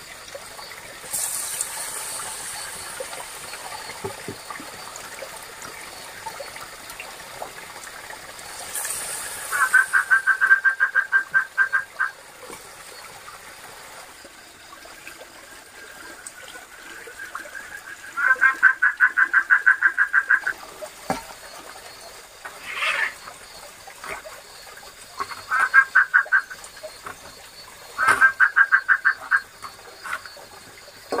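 A frog calling at night: four bursts of rapid pulsed croaks, each a couple of seconds long, over a faint steady background hiss.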